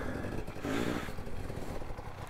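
Two-stroke KTM 250 TPI enduro bike engine running at low revs.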